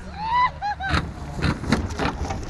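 A DFS Habicht glider rolling out on the grass after landing: an uneven low rumble from its undercarriage running over the ground. In the first second there is a short rising-and-falling call.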